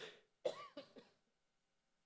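A short, faint cough from a person about half a second in, after a small click at the start, in an otherwise quiet pause.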